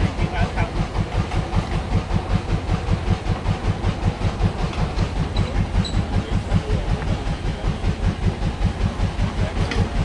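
An engine running steadily, with a fast, even thudding beat.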